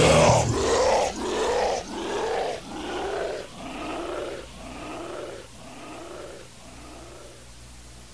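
The death/thrash metal band stops half a second in, leaving a growled vocal shout repeating through an echo effect. There are about eight repeats a little under a second apart, each rising then falling in pitch and each quieter than the last, fading out near the end.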